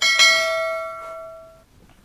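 A bright bell chime sound effect, struck twice in quick succession, then ringing out with several clear tones and fading away over about a second and a half.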